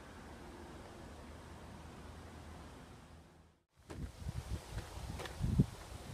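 Faint steady outdoor hiss with a low rumble, then a sudden drop to silence a little past halfway, followed by irregular low thumps and a few clicks: footsteps on a dirt trail and a hand-held camera being carried.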